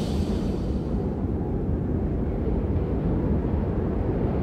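Cinematic rumble sound effect of an animated logo intro: a low, steady rumble with a faint hiss above it.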